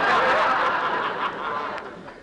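A studio audience laughing at a joke, the laughter fading away over the two seconds.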